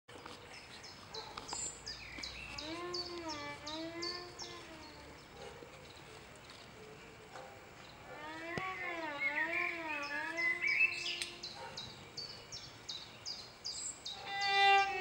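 A bird calling over and over with short, high, downward chirps, about two to three a second. Twice a lower, wavering pitched tone that slides up and down in arcs comes in, from about three and about eight seconds in.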